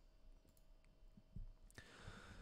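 Near silence: room tone with a faint steady hum and a few faint clicks, the clearest about one and a half seconds in.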